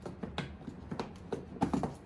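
Small padlocks and their keys clicking and rattling against the latches of a black plastic hard gun case as the locks are undone: a string of about six light, sharp clicks.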